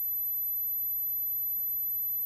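A steady, very high-pitched electronic whine with a faint low hum and hiss under it: interference in the broadcast audio feed, with no sound from the horses or the starting stalls.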